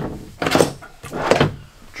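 A dresser drawer being pulled open and pushed shut: two short sliding, knocking sounds, about half a second in and again about a second and a half in.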